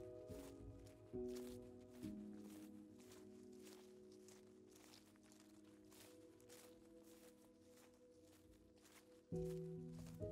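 Quiet, slow music of held notes, with new chords entering about a second in, at two seconds and again near the end. Under it, faint footsteps on a dirt trail at about two steps a second.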